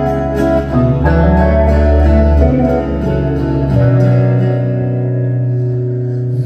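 Live instrumental guitar passage: acoustic guitar and semi-hollow electric guitar play sustained chords over held low notes, with no singing. The chords change about a second in and again near four seconds.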